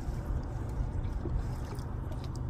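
Steady low rumble aboard a small fishing boat, with faint water sounds against the hull.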